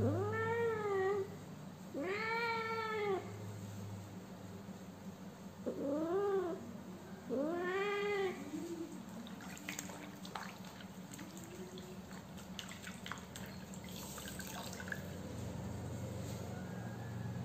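A cat meowing four times, each call drawn out for about a second and rising then falling in pitch, the last near nine seconds in. Faint scattered clicks and rustles follow in the second half.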